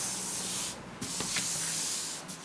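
Paper cards sliding and rubbing across a flat surface as they are swapped by hand, in two brushing strokes with a short pause between them about three-quarters of a second in.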